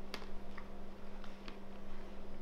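A few faint crunches and clicks from chewing a mouthful of ice cream with crunchy chocolate chunks, over a steady low hum.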